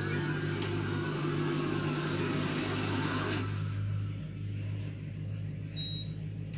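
Cartoon soundtrack from a television speaker, picked up in the room: a steady low hum under a noisy wash that drops away about three and a half seconds in. A faint high beep tone starts just before the end.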